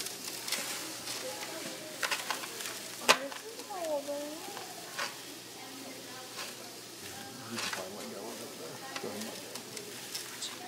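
Sand streaming from a funnelled jug into a load bucket hanging from a model bridge, a steady hiss. Several sharp clicks and knocks come through it, the loudest about three seconds in.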